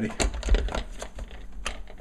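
Plastic lid of a Ninja blender pitcher being set on and pressed down by hand: a few separate sharp plastic clicks and knocks, with low thumps in the first second.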